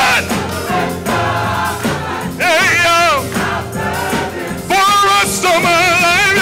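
Gospel choir singing with instrumental accompaniment, the sung phrases wavering with a wide vibrato and swelling loudest around the middle and again near the end.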